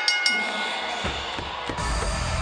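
A wrestling ring bell struck rapidly a few times, ringing on briefly, to signal the end of the match. About a second in, the winners' entrance theme music starts with drum hits.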